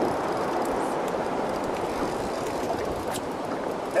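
Steady rushing of wind and choppy water around a small fishing boat, with no engine note.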